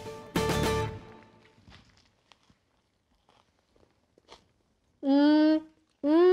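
A short music chord ends about a second in and dies away, followed by a few faint crunches as a battered fish taco is bitten. Near the end comes a woman's closed-mouth 'mmm' of enjoyment while chewing.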